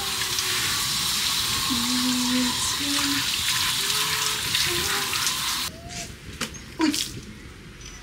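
Handheld shower head spraying water onto a Siberian husky's wet coat, a steady hiss that cuts off suddenly about two seconds before the end. A few light knocks follow.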